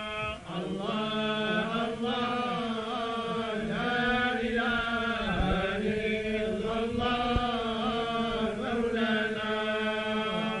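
A group of men chanting a religious text in unison without instruments, in the style of North African tolba Quran reciters, drawing out long, wavering notes over a steady low held tone.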